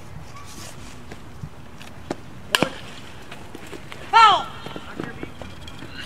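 Sharp smack of a softball striking a bat or glove about two and a half seconds in, then a loud short shout from a person on the field about a second and a half later.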